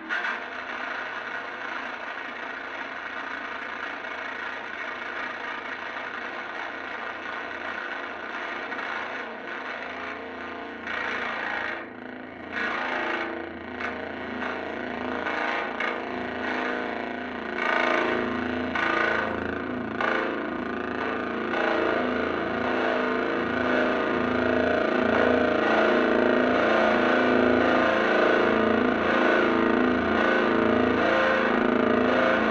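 Electric guitar run through distortion and effects pedals, making a dense, noisy drone. It comes in abruptly at the start, begins to stutter and flicker about a third of the way in, and grows louder and heavier in the low-middle toward the end.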